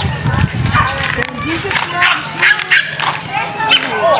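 People's voices talking and calling out, with a few short sharp calls.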